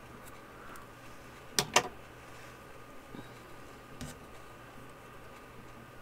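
Scissors snipping through cotton crochet yarn: a sharp double click about a second and a half in, with a fainter click later.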